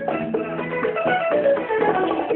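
Live band playing an instrumental passage with no singing; a plucked guitar line of quick, short notes stands out over the accompaniment.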